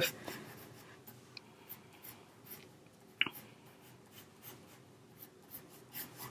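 Pencil lead scratching faintly on paper in short, light sketching strokes, with one brief sharp click about three seconds in.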